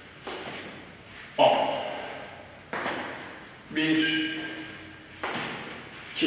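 Feet planting on a hard gym floor about once every second and a half during side-to-side lunges, each thud echoing in a large hall, with a man's voice or breath sounding along with some of the steps.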